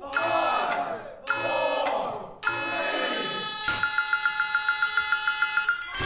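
Live contemporary chamber ensemble music: short, loud chords about a second apart that ring and die away, then a high note pulsing rapidly, about six times a second, from a little past halfway.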